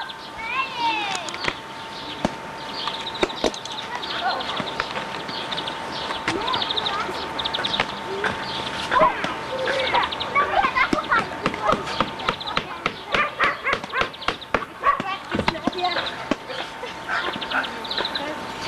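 Children's voices calling out wordlessly while they play on a garden lawn, with bird trills and scattered clicks, over a steady high tone that runs throughout.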